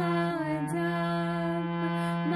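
Harmonium playing a Sikh shabad (kirtan) melody, its reeds holding steady notes that change step by step. A female voice sings along, sliding and wavering between the notes.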